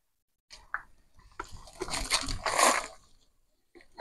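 Rabbit urine fertilizer poured from a small can onto the soil at the base of a tomato plant, splashing and trickling for about a second and a half in the middle, after a few light clicks.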